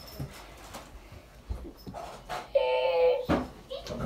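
A toddler gives one short, steady, high-pitched whine, under a second long, about two and a half seconds in, as his runny nose is being wiped with a tissue. Before it there are only faint rustles and taps.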